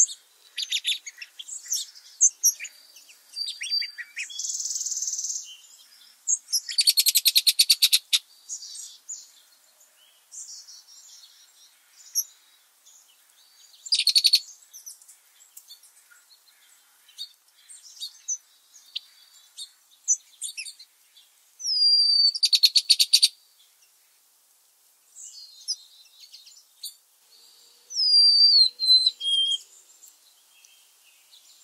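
Wild songbirds singing and chirping, with several fast trilled phrases spread through, some ending in a falling note.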